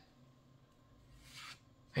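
Mostly quiet, with one brief, faint rustle about a second and a half in: a trading card sliding against the card stack as the next card is pulled to the front.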